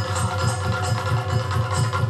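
Yakshagana accompaniment music: quick, even drumbeats, about five a second, with sharp percussive strikes over a steady held drone.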